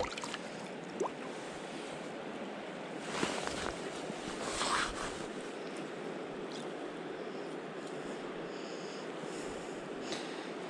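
Steady rushing of a trout stream's flowing water, with two brief louder rushes about three and five seconds in.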